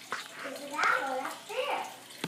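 Girls' voices from a children's TV show, speaking through the TV's speaker and picked up across the room, over a steady hiss.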